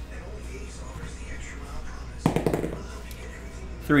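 A plastic die rolled onto a tabletop mat, a quick clatter of several small knocks about two seconds in.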